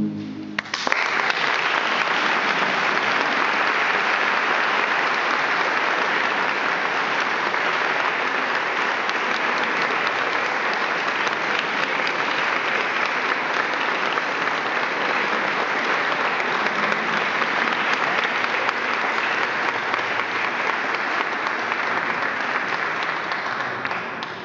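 A men's choir's final held chord ends just as the audience breaks into applause. The clapping starts suddenly under a second in and stays steady and dense, easing slightly near the end.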